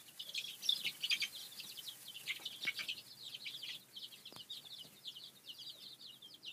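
A brooder full of young chicks peeping, many short, high chirps overlapping without a break.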